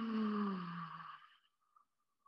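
A woman's lion's-breath exhale: a long, breathy, voiced 'haaa' forced out through the open mouth, its pitch falling steadily until it fades out a little over a second in.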